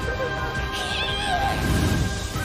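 Anime episode soundtrack: sustained music with held notes. About a second in comes a brief, high, wavering voice-like cry.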